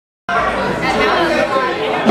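Indistinct chatter of several voices in a large room, cutting in suddenly about a quarter second in.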